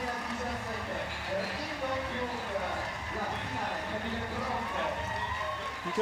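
Indistinct background voices, several people talking at once, over a steady low hum.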